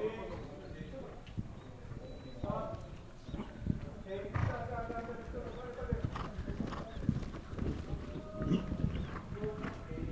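Horse's hoofbeats on arena sand as it canters, coming as uneven low thuds.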